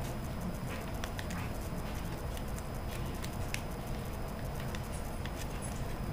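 Faint crinkling and small clicks of a plastic sauce packet being handled and squeezed, scattered over a steady room hiss.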